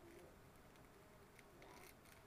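Near silence: room tone with a couple of faint small clicks.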